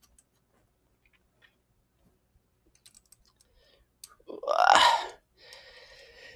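Faint scattered clicks of small metal screws being handled and tried in a camera rig's threaded holes, then about four seconds in a short loud grunt, followed by about a second of hissing noise.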